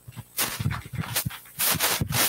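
Audience applause beginning about half a second in, irregular clusters of hand claps.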